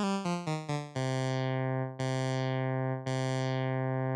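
Software modular synth lead: a square wave and a triangle wave blended through a low-pass filter whose envelope sweeps the cutoff open on each key press, giving a growl or wah. Four quick short notes come first, then a low note is struck three times about a second apart, each strike bright at first and mellowing as it is held.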